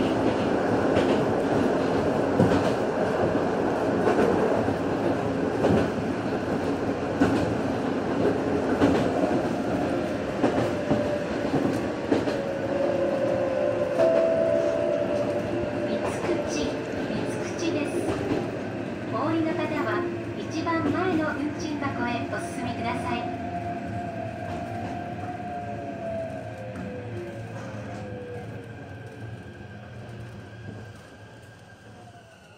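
Electric commuter train running on its line, with wheels clacking over the rail joints. In the second half a whine glides down in pitch and the running sound fades steadily as the train slows.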